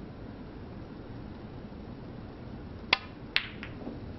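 Snooker shot: a sharp click as the cue tip strikes the cue ball about three seconds in, a second sharp click half a second later as the cue ball hits an object ball, then a fainter knock, over the low hum of a quiet hall.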